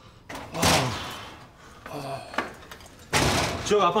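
An interior door bangs open about three seconds in, followed at once by a man's voice calling out.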